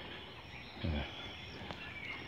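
Quiet outdoor background with faint, high, steady tones, broken by a single short spoken "yeah" about a second in.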